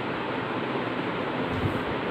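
Steady rushing background noise with no speech, with a faint low bump or two near the end.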